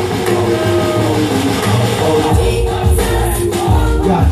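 Gospel song: a man singing into a microphone over amplified backing music with a steady bass line.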